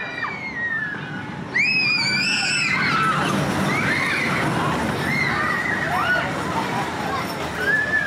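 Arrow Dynamics suspended swinging coaster train passing close overhead, with riders screaming throughout. About a second and a half in it gets suddenly louder: a steady rumble of the train on the track, with the loudest screams.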